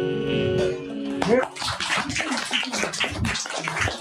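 A live band's final chord on keyboard and electric guitar rings out, then about a second in the audience breaks into applause with a few cheers.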